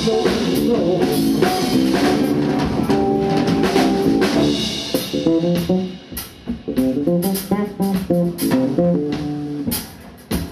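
A live blues trio plays: electric guitar, bass guitar and drum kit. About six seconds in the playing drops in level and thins out to separate plucked notes over drum hits.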